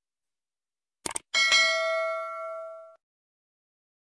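Subscribe-button animation sound effects: a quick double mouse click about a second in, then a notification-bell ding with several ringing tones that fades and cuts off about a second and a half later.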